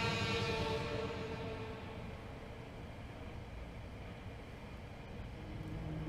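Background music between two songs: a held synthesizer chord fades out over the first couple of seconds, leaving a quiet low hum. Low notes of the next track come in near the end.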